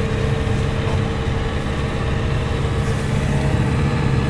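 GAZelle van's Cummins diesel engine running steadily, heard from inside the cab as a constant low drone.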